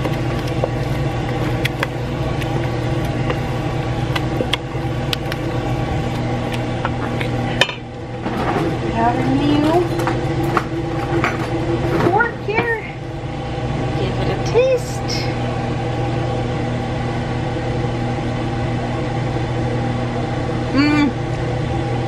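Kitchen range hood fan running with a steady hum. For the first several seconds a wooden spoon scrapes and taps in a stainless steel pot of mashed broccoli and cauliflower.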